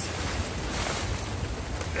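Wind buffeting the microphone: a steady low rumble with a light hiss, no motor running.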